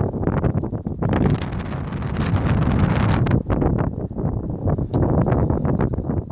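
Wind buffeting the phone's microphone: a loud, rough rush that swells and dips in gusts.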